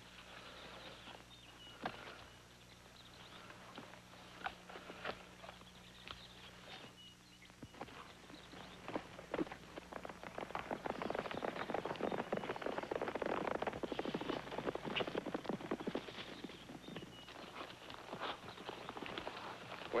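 Hoofbeats of horses galloping, faint at first and growing dense and louder from about halfway through.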